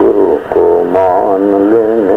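A man's voice singing a drawn-out devotional line with a strong, wavering vibrato, with a short break about half a second in. It is heard in a narrow-band old recording.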